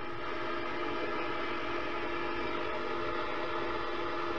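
A steady drone of several held tones sounding together as one chord, over a hiss.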